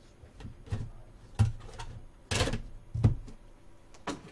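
A cardboard trading-card hobby box being handled and set down on a table: a string of separate knocks and thumps, with one longer scraping sound about two and a half seconds in.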